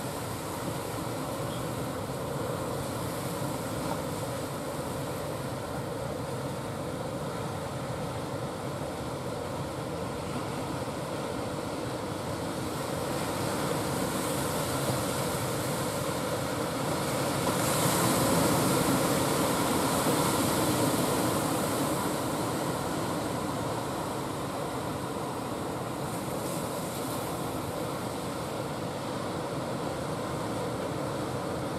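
A wooden fishing boat's engine droning steadily across the water, over a noise of sea and air that swells for a few seconds about two-thirds of the way in.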